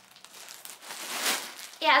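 Plastic mailer bag and the clear plastic wrapping inside it crinkling as they are handled, the rustle swelling about a second in. A woman says "Yeah" at the very end.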